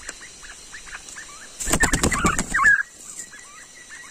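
A freshly caught young male forest quail flapping its wings hard for about a second, about halfway through, with short high calls mixed in. Faint bird chirps run underneath.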